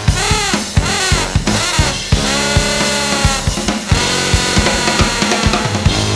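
Brass band playing with a drum kit: trombones and sousaphone over snare and bass drum. The horns make sweeping pitch bends for the first two seconds, then hold sustained chords over a steady drum beat.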